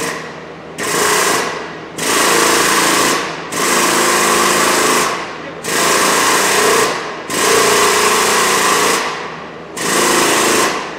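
The Pro Jacks' hydraulic pump running in six bursts of one to one and a half seconds each, a buzzing mechanical chatter with short pauses between, as it raises the car on the jacks.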